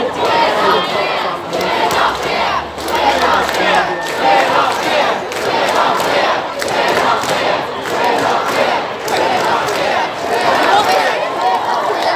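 A large crowd of protesters shouting together, many voices at once, loud and steady.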